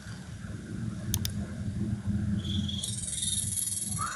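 Two quick computer-mouse clicks about a second in, over a low steady hum. From about halfway a faint, high chirring joins in.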